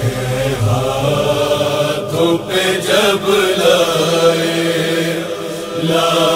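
Noha sung as a slow, drawn-out vocal chant, voices holding long wavering notes between lines of the refrain.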